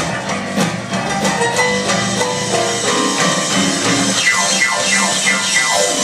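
Live band playing an instrumental rock-and-roll passage on piano, upright double bass and drum kit, with quick descending runs in the second half.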